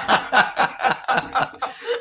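A woman laughing hard, a quick run of short breathy laughs, about six a second, that weaken and trail off near the end.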